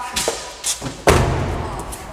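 A few light knocks, then one heavy thud about a second in, from something being handled at the back of a car.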